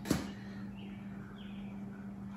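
A single short knock just at the start, then a steady low hum in a quiet garage.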